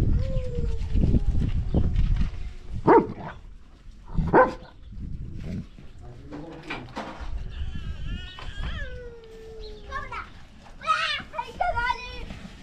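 A dog eating dry flatbread scraps, with two short, sharp sounds about three and four and a half seconds in. A young goat bleats in quavering calls in the second half.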